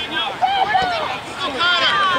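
Several voices calling out and talking over one another, spectators and players at a youth soccer game, none of it clear as words.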